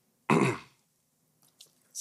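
A person clears their throat once, sharply and loudly, about a third of a second in.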